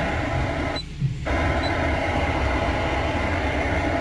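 2015 Mitsubishi ASX factory touchscreen head unit playing FM static through the car's speakers while being tuned between stations: a steady hiss that cuts out briefly about a second in.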